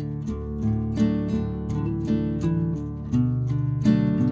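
Background music: an acoustic guitar playing a run of plucked notes.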